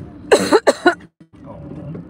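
A woman coughing, three short coughs in quick succession.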